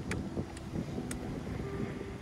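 Wind buffeting the phone's microphone on a moving bicycle, as a low rushing rumble. A music track runs faintly underneath, with a few held notes and a couple of sharp ticks.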